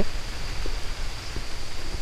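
Steady outdoor background hiss with a thin, constant high-pitched insect drone.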